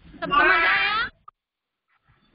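One high, drawn-out, wavering vocal call lasting under a second, like a meow.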